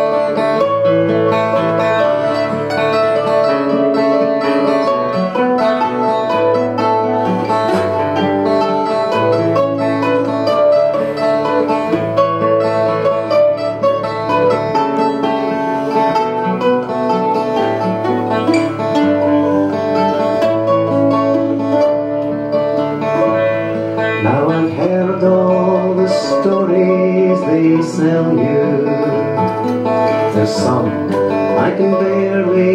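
Acoustic guitar and mandolin playing together, an instrumental passage of a folk song, with the mandolin picking the melody over the guitar's chords and moving bass notes.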